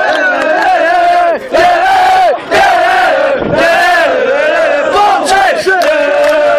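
A group of boys chanting loudly in unison, a drawn-out football-terrace chant of long held notes with no clear words. The chant breaks off briefly twice, about one and a half and two and a half seconds in.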